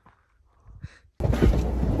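Near silence for about a second, then a sudden loud, steady low rumble with hiss inside a car's cabin.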